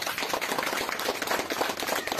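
A small group of people clapping their hands in a dense, irregular patter of claps.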